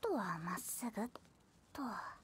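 Speech only: a character's voice from the anime, speaking quietly in Japanese in a few short phrases.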